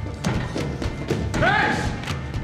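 Tense film score with a driving beat, over thuds of running footsteps on stairs. About one and a half seconds in there is a short, arching squeal, the loudest moment.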